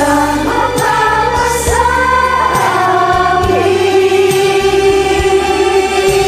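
Several voices, mostly women's, singing a song together over a karaoke backing track, ending on a long held note through the second half.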